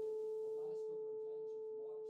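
A single pure-toned musical note from the closing music, ringing on and slowly fading.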